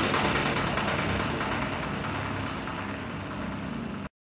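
Closing seconds of a dark psytrance track: a dense, noisy, rumbling electronic texture that slowly fades and grows duller as its high end falls away.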